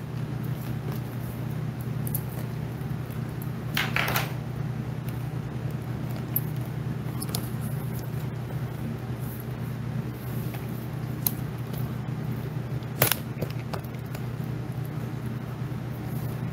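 A steady low hum runs throughout, with brief clicks or rustles about four seconds in and again near thirteen seconds.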